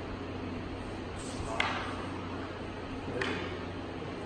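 Wooden jo staffs knocking together in paired kumi-jo practice: a sharp clack about a second and a half in and a softer one near three seconds, each with a short swish before it, over a steady low room hum.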